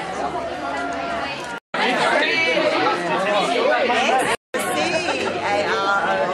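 Chatter of a crowd of people talking at once in a hall, with several overlapping voices. The sound drops out completely twice, briefly, about a third and three quarters of the way through.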